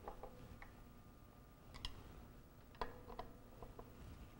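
Faint, scattered metallic clicks of a magnetic screwdriver tightening the mounting screws of a Sargent and Greenleaf 2740 lock body, the sharpest about three seconds in.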